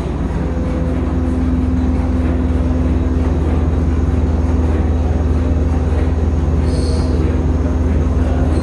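Heinrich Lanz steam engine running steadily, a continuous low mechanical rumble with a steady hum that joins about half a second in.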